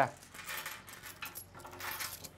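Faint metallic clinks of coins being handled, a few light scattered taps.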